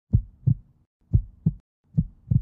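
Heartbeat sound effect: low double thumps, lub-dub, about one beat a second, with silence between the beats.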